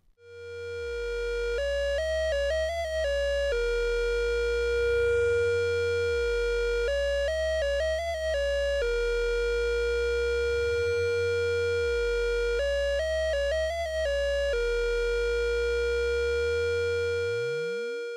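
Synthesizer outro music: a held tone over a low bass drone, with a quick figure of alternating notes returning about every five and a half seconds, and a rising sweep at the very end.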